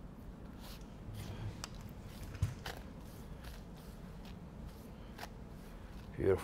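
Hairdressing scissors snipping through long wet hair in short, crisp, irregular cuts, with a single soft thump about two and a half seconds in.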